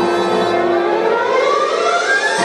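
Show soundtrack through outdoor loudspeakers: the orchestral music thins out and a single siren-like tone glides steadily upward in pitch through the two seconds.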